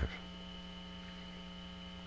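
Steady electrical mains hum and buzz in the recording, with a thin high whine above it.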